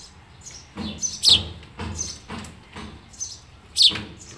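Sparrow chirping in a run of short calls about every half second, two of them loud and falling in pitch, about a second in and near the end.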